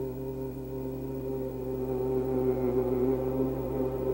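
A voice chanting the word "HU" as one long, steady held note into a handheld microphone.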